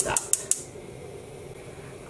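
Stove being switched on to heat the dyepot: a quick, even run of sharp clicks for about half a second, then a steady faint hum.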